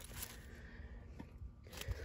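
Faint crackling and rustling of dry, dead geranium leaves being plucked off the plant by hand, with a few small ticks.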